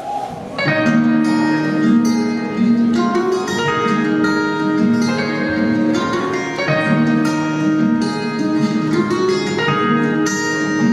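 Instrumental intro of a song played from a recorded backing track over the hall's sound system, starting abruptly about half a second in and going on with a steady repeating pattern of chords.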